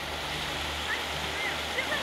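Shallow river rapids rushing steadily, with a few faint, brief calls of distant voices over the water noise.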